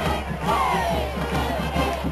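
High school marching band playing over a quick, steady drum beat, with shouting voices over the music.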